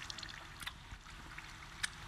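Faint thin trickle of freshly distilled spirit running from a still's outlet into a collecting bowl, with two small clicks, one early and one near the end.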